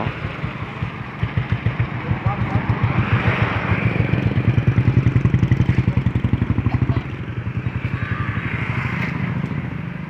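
Motorcycle engine idling with an even, rapid thumping. The sound drops in level suddenly about seven seconds in.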